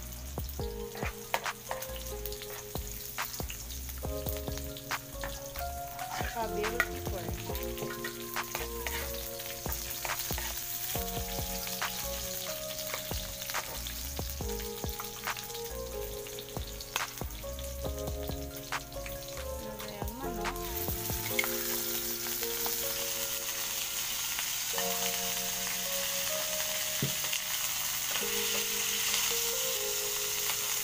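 Garlic, onion, ginger and chili sizzling in hot oil in a wok, with the scattered clicks of a spatula stirring. About two-thirds of the way in the sizzling grows louder and fuller as raw chicken pieces go into the oil.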